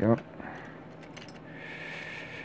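A brief hummed 'mm' at the very start, then a few light clicks of small plastic model-kit parts being handled and a soft rustle of a plastic bag.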